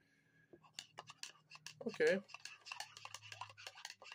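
A spoon stirring strawberry syrup into milk in a cup, making a run of quick light clicks and scrapes against the cup's side.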